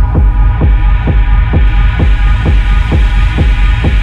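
Techno from a DJ mix: a steady four-on-the-floor kick drum a little over twice a second under a sustained, droning synth chord.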